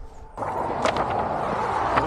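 Steady rustling hiss of leaves and brush as someone moves through dense undergrowth, starting suddenly a moment in, with a sharp snap or click about a second in.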